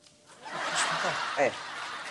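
Audience laughter from a sitcom laugh track, swelling up about half a second in and carrying on steadily.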